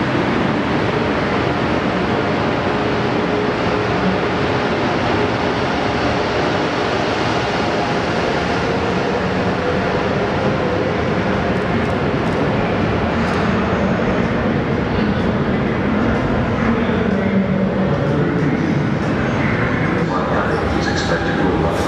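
Electric passenger trains running on the adjacent track through a covered station: the tail of an NJ Transit train moving off, then an Amtrak Acela Express moving along the platform. The noise is steady and loud, wheels on rail with a faint steady hum.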